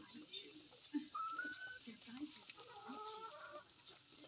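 Faint chicken calls: a short, slightly rising call about a second in, then a longer call of about a second near the three-second mark.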